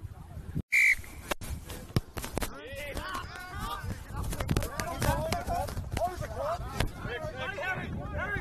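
A single short, loud referee's whistle blast about a second in, then players shouting and calling across the pitch.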